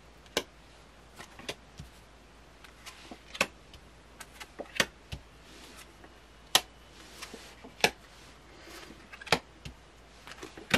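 Tarot cards being laid down one after another on a table: a string of short, sharp card slaps and flicks at irregular intervals, some coming in quick clusters.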